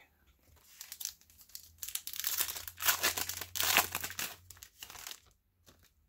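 Wrapper of a 2020 Donruss football card pack crinkling and tearing as it is opened: a run of rustles lasting about four seconds, loudest in the middle, then stopping.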